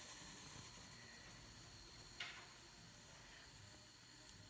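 Near silence: faint room hiss, with one brief soft rustle about two seconds in.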